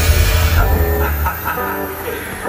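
Live rock band music dying down: guitar notes ring out as the bass drops away about two-thirds of the way in, and the level falls steadily.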